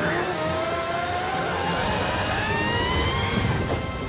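Cartoon tornado sound effect: a steady rushing wind with a whistling tone that rises slowly over about three seconds, laid over background music.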